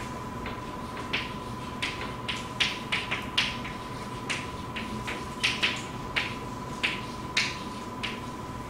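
Stick of chalk tapping and clicking against a blackboard while writing, a string of irregular sharp ticks, over a faint steady high tone.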